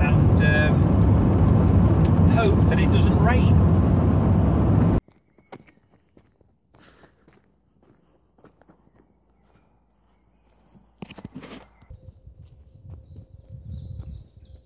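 Steady engine and road noise inside the cab of a moving Toyota HiAce van, cutting off abruptly about five seconds in. What follows is much quieter outdoor sound with scattered light ticks, a knock, and low rustling near the end.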